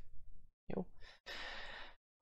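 A man's audible breath between sentences: a brief low vocal sound a little under a second in, then a breath drawn for most of a second near the end, which cuts off suddenly.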